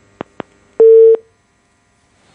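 Telephone line on a call-in broadcast clicking twice, then giving one loud, steady beep before going silent: the caller's phone line cutting off.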